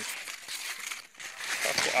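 Maize leaves and stalks rustling as they brush against the phone and the person pushing through the corn plants, with a brief lull about a second in.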